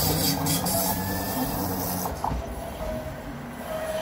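A tram running on its rails close by: a steady rush and low rumble with a few faint steady whining tones, loudest at first and easing off slightly.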